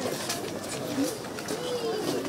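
Several people talking around a round of handshakes and greetings, with a bird calling in the background.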